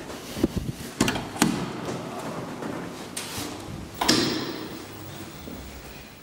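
Elevator doors working: a few knocks and clunks in the first second and a half, then a loud door bang about four seconds in that rings away.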